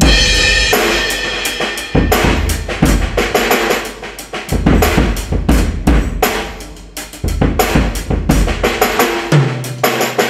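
Acoustic drum kit played in a steady rock groove, heard through the Yamaha EAD10 drum mic processor with an arena-style preset: reverb on the whole kit, a kick drum augmented with extra low knock, and a tambourine sample triggered by hard snare hits. It opens on a loud hit, with big, long-ringing kick strokes every couple of seconds.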